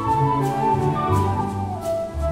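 Concert flute playing a lyrical solo melody over a full orchestra's accompaniment, with sustained low strings underneath; the melody steps downward near the end.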